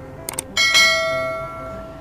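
Subscribe-button animation sound effect: a couple of quick clicks, then a single bell chime that rings out and fades over about a second.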